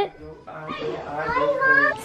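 A young child's voice: one long wordless vocalization with a wavering pitch, starting about half a second in.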